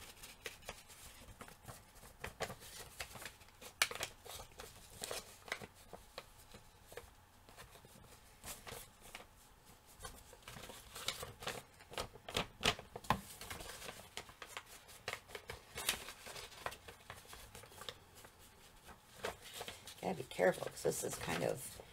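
Faint rustling of paper with scattered small taps and clicks, as a dyed-paper tag is handled and its edges are dabbed with an ink blending tool.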